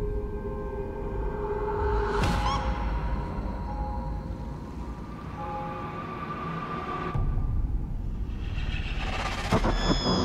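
Horror movie trailer score: held, droning tones over a low rumble, with a sharp hit about two seconds in and a swell near the end.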